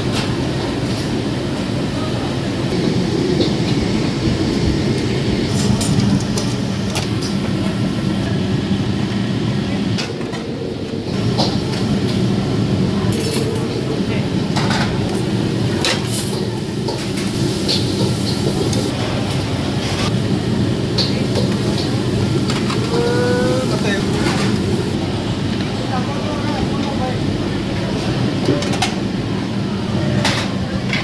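Busy restaurant kitchen: a steady loud roar from the steamers and extractor hood, with frequent sharp clinks of steel plates and utensils.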